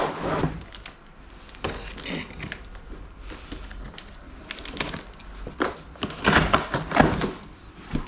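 A cardboard box being slit open with a box cutter and its flaps pulled back: scattered scrapes, taps and rustles of cardboard, with a louder run of knocks and tearing about six to seven seconds in.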